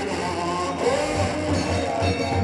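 Music: a wavering melodic line over a steady, repeating low beat.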